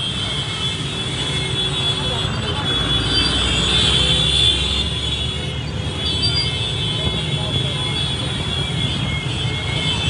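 Dense motorcycle and car traffic moving with a crowd: engines running and many voices mixed together in a steady din, with steady high-pitched tones running through it.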